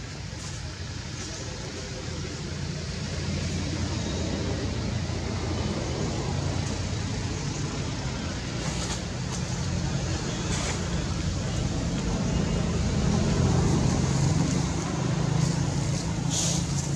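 Steady low engine rumble of a motor vehicle, slowly growing louder and at its loudest near the end.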